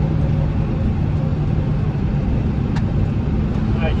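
Steady low rumble of a vehicle's engine and tyres heard from inside the cab while driving on a snow-covered highway, with a single light click about three seconds in.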